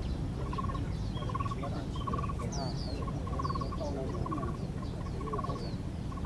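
Black-browed barbet calling: a short rolling trill repeated about seven times, roughly once every second or less. Other small birds give faint high chirps over a steady low rumble.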